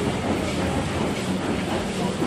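Medical paper-plastic pouch making machine running steadily: a continuous dense mechanical noise with a faint low hum.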